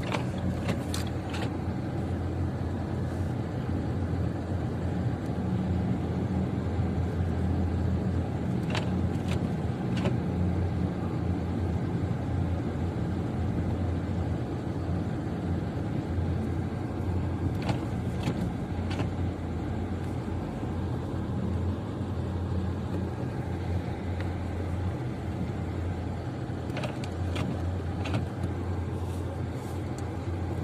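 Steady low rumble of a car driving on a snow-covered road, heard from inside the cabin: engine and tyre noise with a few faint clicks.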